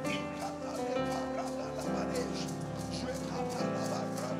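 Church keyboard playing sustained, slowly changing chords over a steady percussion beat, under the voices of a congregation praying aloud.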